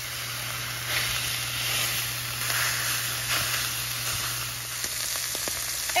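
Beef patties and diced peppers and onions frying in a hot cast iron skillet: a steady sizzle, with a few faint scrapes of a silicone spatula breaking up the meat.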